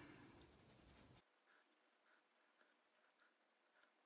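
Near silence: faint room tone and the faint soft strokes of a sable-hair watercolour brush on paper.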